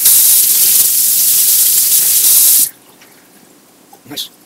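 Kitchen faucet running loudly into a stainless steel sink, then shut off abruptly a little over halfway through.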